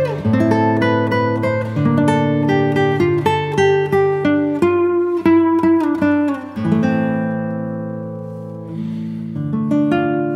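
Background music on fingerpicked acoustic guitar: a run of quick plucked notes, then a chord left ringing and fading about two-thirds of the way through, with a few new notes near the end.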